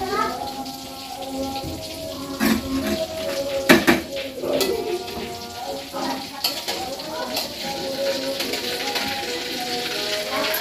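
A metal spoon clinking and scraping against a wok as chicken pieces frying in it are turned over. There are several sharp clinks, and the loudest comes a little before four seconds in.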